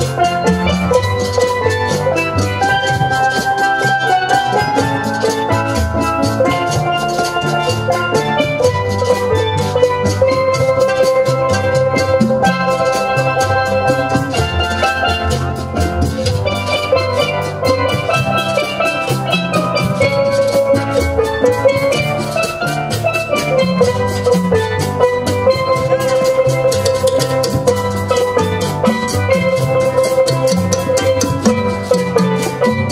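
Steel drum ensemble playing: many steel pans ringing out melody and chords together, over a steady drum accompaniment.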